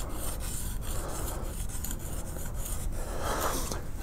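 Steel skew chisel edge being rubbed over an oiled translucent Arkansas oilstone, a steady scraping hiss of honing.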